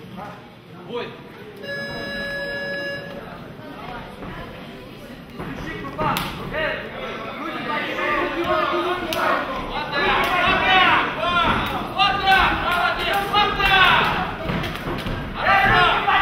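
Spectators shouting and yelling at an MMA cage fight, getting louder from about six seconds in, with scattered thuds of punches and kicks landing. About two seconds in, a steady buzzer tone lasting just over a second marks the start of the round.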